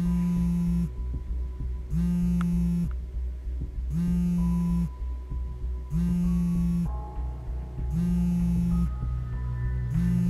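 A mobile phone buzzing on vibrate: five even buzzes, each just under a second long and two seconds apart, over a soft synth music score with a low throbbing drone.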